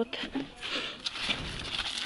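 Rustling and brushing of large pumpkin leaves and grass, with a few light clicks and a brief low handling rumble in the middle.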